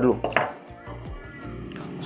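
Faint handling noises of fingers working a blender motor's wire joint and unwrapping its electrical insulation tape, with quiet background music underneath.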